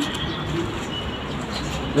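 Pigeons cooing faintly in the background over low outdoor ambience, with a brief high note about a second in.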